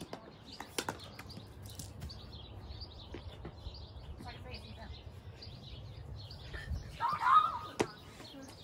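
Plastic wiffle bat cracking against a wiffle ball about a second in, over birds chirping. Near the end a voice shouts, the loudest sound here, with another sharp click just after it.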